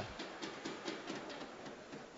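Faint ice hockey rink ambience of play continuing on the ice, an even background noise with a few light clicks scattered through it.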